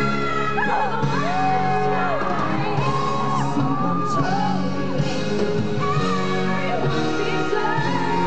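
A woman belting a musical-theatre song live into a microphone over a loud amplified backing track, her voice holding long notes and sliding between them.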